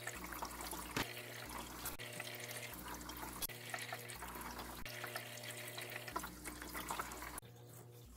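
Kitchen scissors snipping through microgreen stems, a handful of short faint snips, over a steady low hum and a faint trickle of water.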